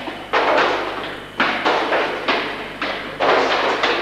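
A run of about six loud thuds with sudden starts, each trailing off in a long echo: a person stamping, kicking and dropping onto the hard floor of a pedestrian underpass.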